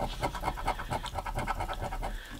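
A coin scratching the coating off a paper scratch-off lottery ticket in quick back-and-forth strokes, about ten a second.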